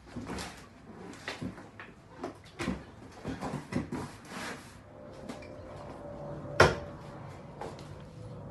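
Irregular clunks and rattles of an Ohvale GP-0 mini race bike and its wheeled rear paddock stand being handled and shifted, with one loud, sharp knock about two-thirds of the way through.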